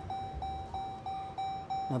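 Jeep Grand Wagoneer's in-cabin warning chime beeping continuously, one steady tone repeating about four times a second.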